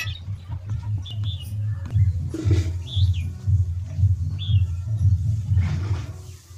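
A few short, high bird chirps, about a second and a half apart, over a loud, uneven low rumble.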